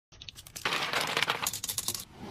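Small hard makeup containers clinking and clattering in clear acrylic organizer trays, a dense run of quick knocks that starts sparse and thickens about half a second in.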